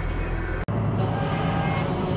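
Case IH Magnum tractor engine running steadily under way, heard from inside the cab as a low, even drone, with a momentary break about a third of the way in.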